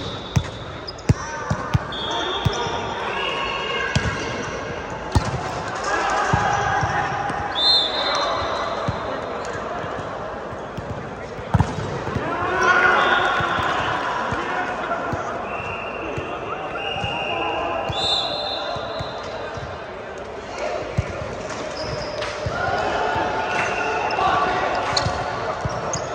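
Volleyball gym sounds: sharp hits and bounces of volleyballs scattered throughout, short high sneaker squeaks on the court floor, and players' voices calling and chattering in a large hall.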